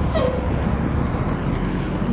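Transit shuttle bus driving past close by, its engine and tyres making a steady, very loud noise with a deep rumble.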